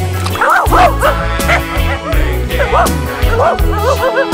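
A dog yipping and whining in short rising-and-falling cries, over background music with a steady bass beat.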